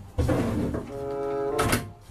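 A wooden panel door pulled shut with a thud, over background music with sustained notes.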